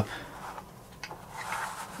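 Quiet handling noise as a peeled adhesive rubber grip panel is lifted off a cutting mat by the fingers, with a light tick about a second in.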